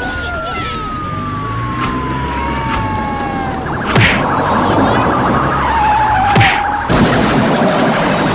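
Cartoon sound effects: a long tone glides slowly downward for the first few seconds. Then comes a fast buzzing rattle, with two sharp hits about two and a half seconds apart.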